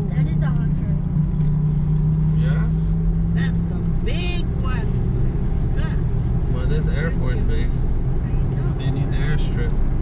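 Steady low drone of a moving car's engine and tyres heard from inside the cabin, with faint snatches of voices over it.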